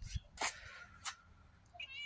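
Domestic cat meowing, with a short rising call near the end.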